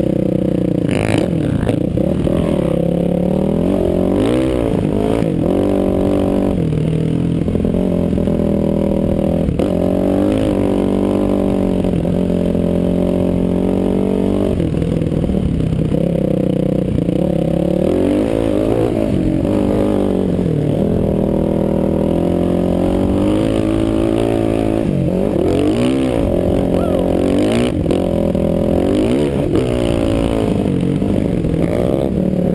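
Sport ATV engine running hard across sand, its revs rising and falling again and again as the throttle is worked.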